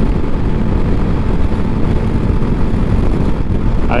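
Steady riding noise from a VOGE 300 Rally cruising at about 80 km/h, its single-cylinder engine held near 5,300 rpm, with wind rushing over the microphone.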